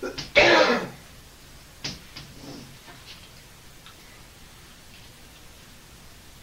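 A man clears his throat with a short, harsh cough about half a second in. A few light sharp taps of chalk on a blackboard come just before and after it.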